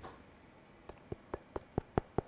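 Light metallic taps on the anodized aluminium body of an ExoLens wide-angle phone lens, about six in quick succession starting about a second in, each with a brief high ring that shows it is metal, not plastic.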